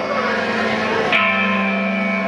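A rock band playing live in a hall: a chord is struck sharply about a second in and rings on over a steady held low note.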